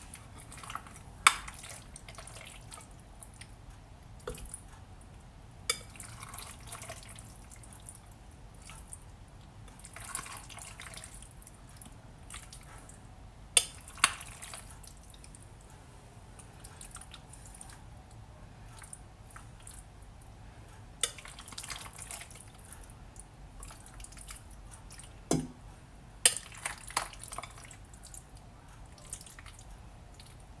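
A spoon serving creamy salad into a glass bowl: scattered light clinks of the spoon against the glass, with soft scooping and squishing sounds in between.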